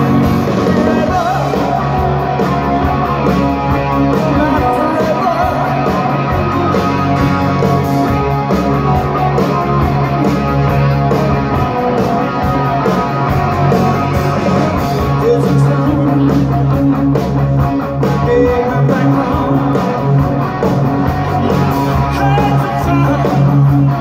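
A rock band playing live through a large outdoor PA: loud, steady electric guitars, bass and drums with a singing voice, heard from among the crowd.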